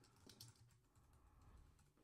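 Faint typing on a computer keyboard: a quick run of quiet keystrokes.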